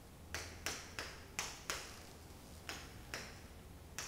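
Chalk on a chalkboard: sharp taps, each with a short high scrape, as line segments of a zigzag are drawn. Five come quickly in the first two seconds, then a few more, spaced further apart.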